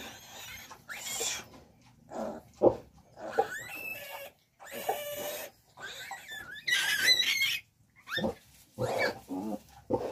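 Three-day-old piglet squealing in repeated shrill bursts while held and restrained for an iron injection; the longest, loudest squeal comes about seven seconds in.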